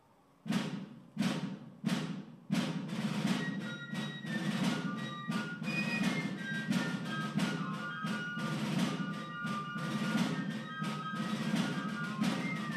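Military drums and a high piping melody: four single drum strikes about two-thirds of a second apart, then a steady drum cadence with the tune running over it. This is the march for a color guard presenting the colors.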